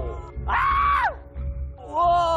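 A man's short, high scream of excitement about half a second in, with another shout starting near the end.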